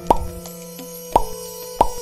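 Three short cartoon pop sound effects, the first at the start, one about a second in and one near the end, over soft background music with held notes.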